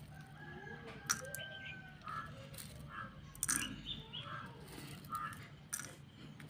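Faint bird calls, including a drawn-out call in the first two seconds and a run of short calls after it, with a few sharp clicks.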